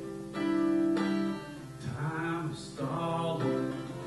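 Acoustic guitar played live as song accompaniment, its notes ringing and held; a man's singing voice comes in over it about halfway through.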